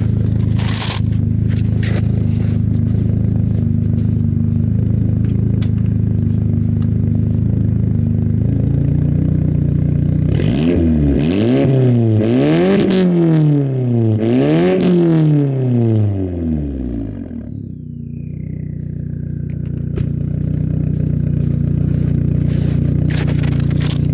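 2004 Saab 9-3 sedan's engine heard at the twin exhaust tips, idling steadily, then revved up and let fall back a few times about halfway through, before settling to idle again.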